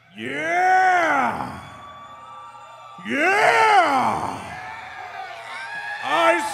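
A man's wordless vocal wail into a microphone, sung twice. Each long cry bends up and then falls back down in pitch, with the band nearly silent beneath.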